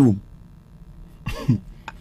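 A spoken phrase trails off, then after a short pause one brief cough from a person about a second and a half in.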